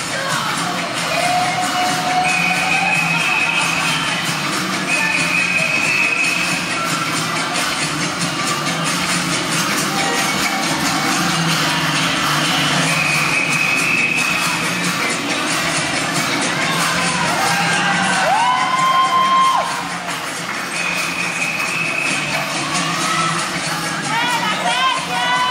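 Saya music for a caporales dance playing loud, with the audience cheering and shouting over it.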